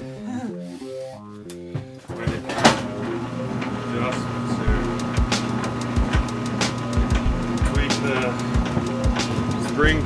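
Cable stripping machine's 1.5 kW electric gear motor starts about two and a half seconds in and runs on with a steady hum and a higher whine. Scattered clicks and knocks sound over it.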